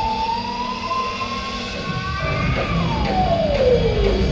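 Live 1970s rock band music: one long held high note rises slowly, then slides down about an octave near the end, over sparse accompaniment, before the full band comes back in.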